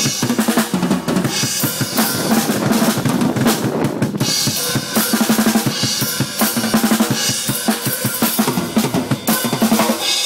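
A drum solo played fast and without pause on a drum kit: rapid stick strokes on snare and toms, with bass drum and Zildjian cymbals mixed in.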